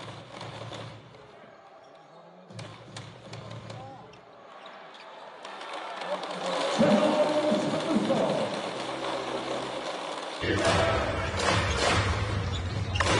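Live arena sound of a professional basketball game: crowd noise and voices, with a ball bouncing on the court. The crowd noise builds about halfway through, and the sound jumps suddenly louder near the end.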